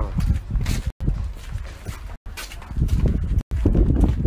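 Footsteps on dirt with the rub and knock of clothing and padded gear against a handheld phone's microphone as a person walks, cut by three brief silent dropouts.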